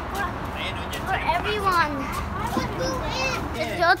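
Young children's voices chattering and calling out, with no clear words, over a steady low outdoor background noise.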